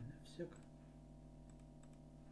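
Near silence over a steady low electrical hum, with a few faint clicks of a computer mouse and a brief voice sound about half a second in.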